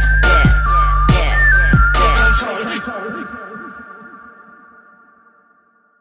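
Ending of a grime instrumental beat: heavy sub-bass, drum hits and a high, whistle-like synth melody play, then the bass and drums stop about two and a half seconds in. The remaining synth tones ring on and fade away over the last few seconds.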